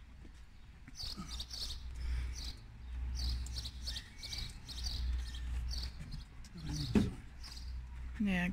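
Small birds chirping repeatedly over a low steady rumble, with a single sharp knock about seven seconds in.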